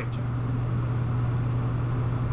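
A steady low hum with a faint even hiss over it, unchanging throughout.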